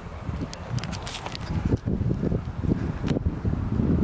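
Wind rumbling on a handheld camera's microphone, with a few short knocks and clicks from the camera being carried.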